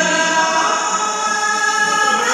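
A woman singing a Vietnamese folk courtship song (hát giao duyên) through a microphone and PA, holding long, level notes. A man's lower singing voice fades out just after the start.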